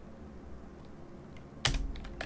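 Computer keyboard keystrokes: a quiet stretch, then a short, quick run of key clicks near the end.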